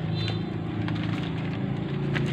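A small engine running steadily at idle, with a few faint clicks over it.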